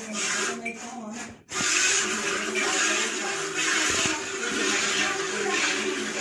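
Milk squirting into a steel bucket as a water buffalo is milked by hand, a hissing splash repeating about twice a second with each pull on the teats. There is a brief break about a second and a half in.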